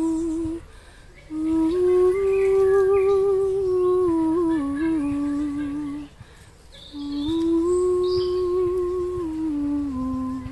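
A woman sings wordless, slow, held notes on a soft 'oo' sound with a slight waver. The sound comes in three long phrases, each starting higher and stepping down at its end, with short breaths near one second in and about six seconds in.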